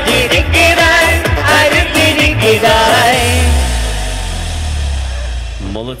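A song sung live into microphones over a keyboard and laptop backing track with a steady beat. About three seconds in, the singing stops and the track holds a closing chord that fades as the song ends.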